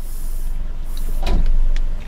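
Slurping an iced drink through a plastic straw, a high hiss at the start and again about a second in, over a steady low rumble in the car cabin.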